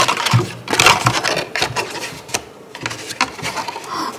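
A paper shopping bag rustling and crinkling as a hand rummages inside it. The rustles come in irregular bursts, with a quieter lull about halfway through.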